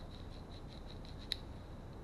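Faint small plastic clicks as the rotary volume switch of a Hysnox HY-01S Bluetooth helmet headset is worked by hand to spread WD-40 into it, with one sharp click just past halfway.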